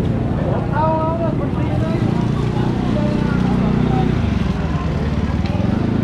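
A vehicle engine running steadily close by, with people's voices over it.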